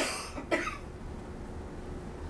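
A person coughing twice in quick succession, about half a second apart, the first cough the louder.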